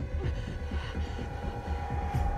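Suspense film score: a low rumbling drone, with a steady higher tone coming in about halfway.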